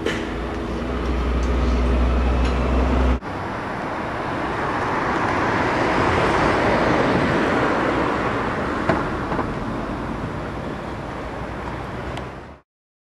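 Running noise of a moving road vehicle: a steady low engine drone, cut off sharply about three seconds in and followed by an even rushing noise that swells and then eases off.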